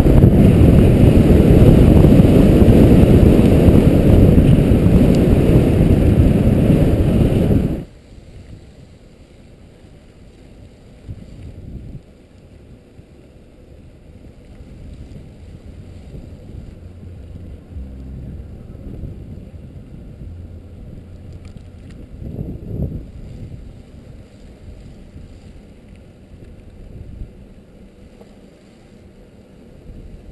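Loud wind rushing over the microphone of a bicycle-mounted camera as the bike rides at speed, cutting off suddenly about eight seconds in. After that there is only a faint, low wind rumble.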